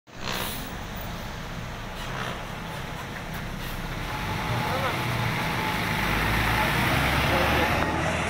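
Coach bus driving past close by, its engine running with a low hum. Engine and road noise grow louder over the second half as the bus passes.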